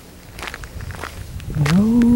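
A few footsteps, short crunches on loose ground, then a woman starts singing a long held note near the end.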